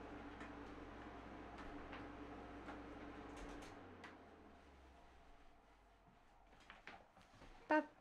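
Air conditioner's steady low buzz on the microphone, cutting out about four seconds in and leaving near silence with a few faint knocks.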